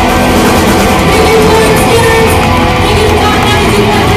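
Live rock band playing loudly and without a break: electric guitars, bass and a drum kit, picked up on a pocket camcorder's built-in microphone.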